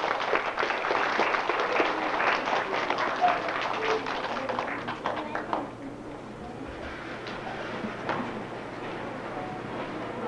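Audience of children applauding with dense, rapid clapping that dies away a little before halfway, leaving quieter background chatter.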